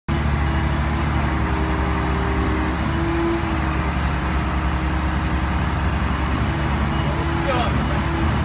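Engines running steadily: a low, even drone with a constant hum, with a short rising squeal near the end.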